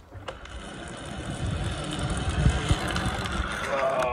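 Zip-line trolley pulleys running along a steel cable, a steady whir that grows steadily louder as the rider comes closer.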